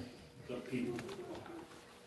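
Faint, indistinct murmur of a voice in a quiet room.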